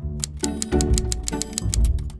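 Background music with a steady beat, cutting in suddenly.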